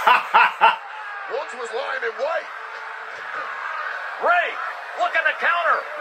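A man's wordless exclamations and chuckling, short 'oh'-like calls in three clusters: at the start, around two seconds in, and near the end.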